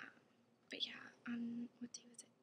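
A woman whispering a few soft words.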